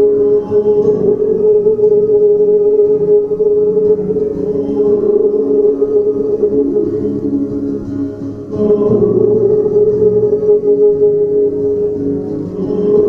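Instrumental music with a steady held drone note over soft chords; it dips briefly about eight seconds in, then swells again.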